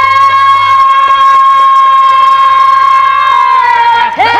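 Singers in an Odia pala holding one long, high note steady for about three and a half seconds, the pitch sagging slightly near the end. Faint even percussion beats, about four a second, run underneath.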